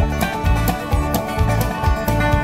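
Country band playing an instrumental passage between sung verses, with a steady beat.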